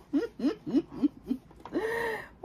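A woman laughing: a quick run of short, falling ha-ha pulses that trail off about a second and a half in, then a brief held vocal sound near the end.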